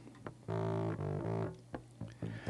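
Recorded bass guitar played back through a drive pedal and amp emulation, giving it a distorted, overtone-rich tone: two sustained notes, the second following straight on from the first.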